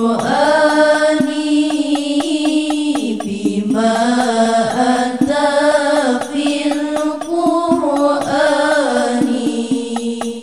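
Young female voices singing an Arabic sholawat together into microphones, with long held notes that bend and ornament the melody over a low sustained note. A steady, light rhythmic tick runs behind the voices.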